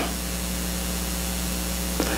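Steady hiss with a low, steady electrical hum: the background noise of the church's sound and recording system, heard between words.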